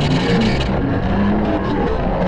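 Loud, continuous wall of heavily processed, overlapping audio layers, with several pitched lines shifting against each other and a harsh noisy edge, typical of a stacked-effects remix track.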